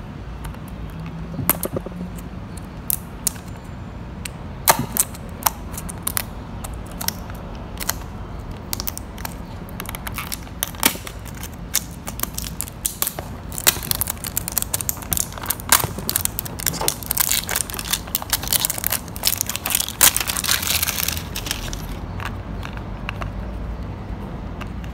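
Fingers handling and prying at a small cardboard model-car box to open it: scattered scratches and clicks at first, thickening into a dense crackle of card and packaging from about halfway through until near the end.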